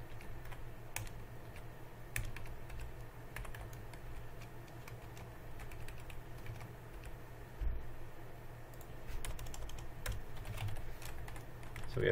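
Computer keyboard being typed on in irregular, scattered keystrokes, with a low steady hum beneath.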